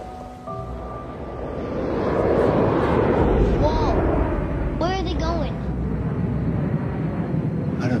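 Film-trailer sound design: a held musical tone, then a deep rumbling roar that swells up over a couple of seconds and stays loud, with a few short voice-like cries near the middle.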